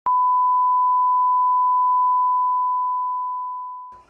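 An edited-in bleep: one steady, pure, single-pitched beep that starts suddenly, holds level, then fades away over the last second or so.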